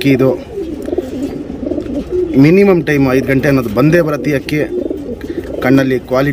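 Domestic pigeons cooing: low, rolling coos that rise and fall in pitch, one clear arching coo about halfway through, with a man's voice alongside.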